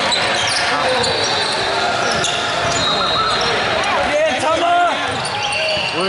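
A basketball being dribbled on a hardwood gym floor during play, with people talking over it and the sound of the hall around them.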